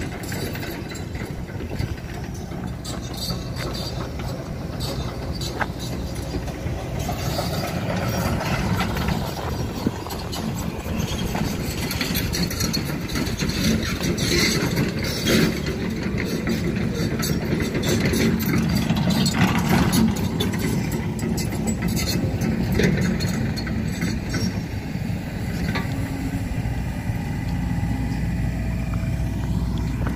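Steady low engine rumble with scattered knocks and clatter, growing louder through the middle stretch and easing again near the end.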